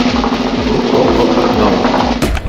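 A loud, steady noise with a low steady hum beneath it, starting abruptly and cutting off after about two seconds, in the manner of an edited-in sound effect.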